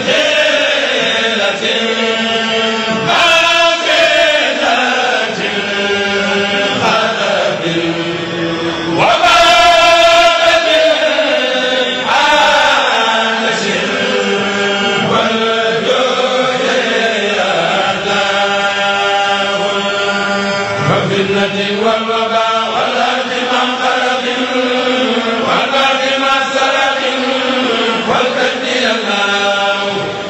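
Men's voices chanting a Mouride khassida, a devotional Arabic poem, unaccompanied through microphones, with long drawn-out notes that glide up and down from phrase to phrase.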